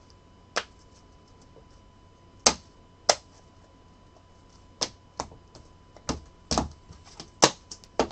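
Clear hard plastic card holders clacking against each other and being set down on a tabletop: a scatter of sharp, separate clicks that come closer together in the second half.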